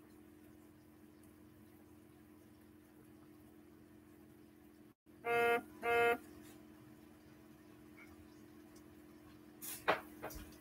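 Two short identical beeps or honks, one pitched tone sounded twice about half a second apart, over a faint steady hum, with a sharp knock near the end.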